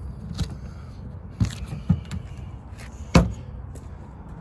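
Clicks and knocks from a travel trailer's exterior storage compartment door as it is unlatched and lifted open. There are four sharp ones, and the loudest comes about three seconds in, over a steady low rumble.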